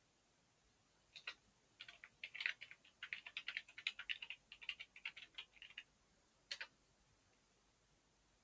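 Computer keyboard being typed on: a quick run of light keystrokes from about a second in until nearly six seconds, then one separate keystroke about six and a half seconds in, the Enter that runs the typed command.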